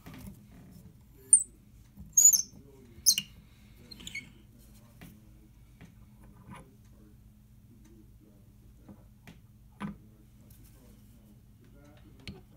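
Tapered tuning pin squeaking in a laminated maple pin block as it is turned out with a tuning tool: about four short, high squeaks in the first four seconds, then a few faint clicks.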